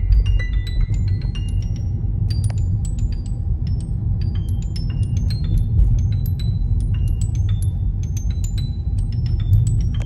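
Steady low rumble of a car driving, heard from inside the cabin, under background music of quick, high plinking notes scattered throughout.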